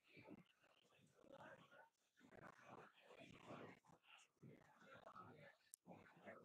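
Faint, indistinct voices of people talking quietly among themselves, barely above near silence.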